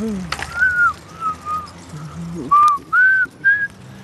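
A person whistling a short tune: about six brief clear notes that rise and fall in pitch, one dipping lower just past the middle.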